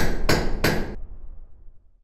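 Closing audio logo of the ad: three sharp percussive knocks about a third of a second apart, over a low bass note that fades away.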